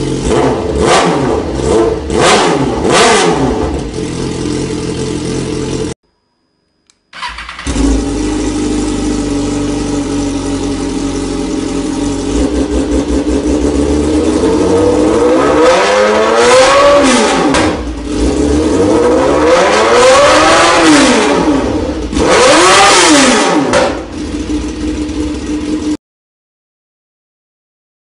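Motorcycle engine through an Akrapovic titanium full exhaust system, idling and blipped three times in quick succession. After a second of silence it runs again, settling into idle before three longer revs that rise and fall, then back to idle.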